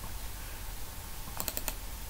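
Computer mouse clicks: a quick run of about four sharp clicks about one and a half seconds in, over a low steady hum.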